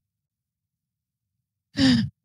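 Silence, then near the end a short breathy vocal sound from a person, like a sigh, with a falling pitch.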